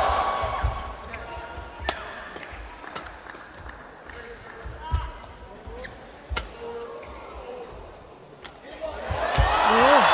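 Badminton rally: rackets striking the shuttlecock in sharp cracks, about one a second, mixed with short squeaks of shoes on the court floor. Crowd noise fades out in the first second and swells again near the end as the rally finishes.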